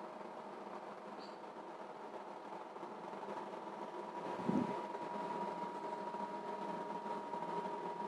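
Faint steady background hum carrying a couple of steady thin tones, with one brief low sound about four and a half seconds in.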